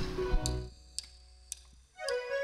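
Held low background tones fade out, then three sharp ticks about half a second apart count in the band, a drummer's count-in. Band music starts right at the end.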